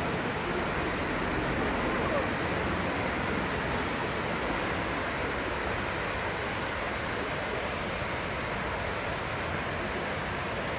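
Steady, unbroken rush of a waterfall's falling water.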